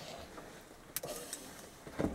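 A person moving close to the microphone: clothing rustling, with a few scattered light knocks and a sharper click about a second in.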